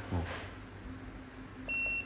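A single short electronic beep, about a third of a second long near the end, from an HN685 handheld metal hardness tester as its power key is pressed to switch it off.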